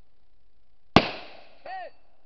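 A single rifle shot fired from the prone position about a second in, its report trailing off quickly. Less than a second later comes a short, fainter sound with a pitch that rises and falls.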